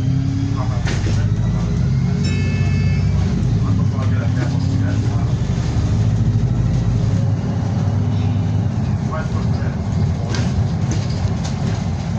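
A single-decker bus's diesel engine and drivetrain heard from inside the front of the bus as it drives along. The engine note rises as it pulls through the gears, near the start and again about four seconds in.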